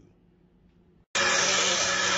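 Electric blender motor running at full speed, starting abruptly about a second in after near silence and holding a steady loud whir, blending a batch of salad dressing.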